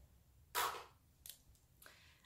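Handling of makeup pencils: a short, sharp rustle about half a second in, then two faint clicks.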